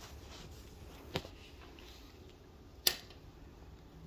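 Quiet outdoor background with a steady low rumble, broken by two sharp clicks: a small one about a second in and a much louder one near the end.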